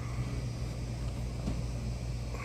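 Steady low hum of a ceiling-mounted air-conditioning unit filling a quiet restaurant dining room.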